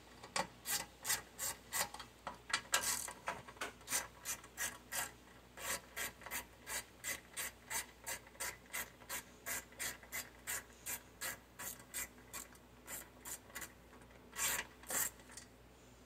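Hand socket ratchet clicking in quick repeated strokes, about three a second, as it is swung back and forth to loosen the small 8 mm bolts holding a lawn mower's fuel tank. It pauses briefly near the end, then gives two louder clicks.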